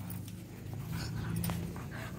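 Faint rustling of cloth and a few light taps as a freshly bathed, long-haired dog rolls and rubs itself dry on a cotton sheet, over a low steady hum.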